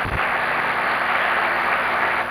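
Audience applauding, a steady even spread of clapping, with a short low thump at the very start.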